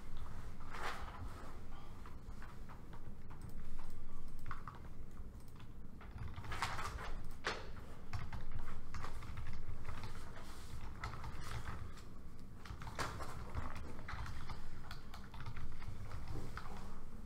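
Typing on laptop keyboards: irregular, scattered key clicks over a steady low room hum.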